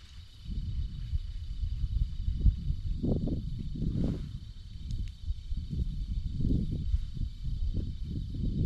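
Wind gusting against the microphone in an irregular low rumble, over a faint steady high-pitched hum.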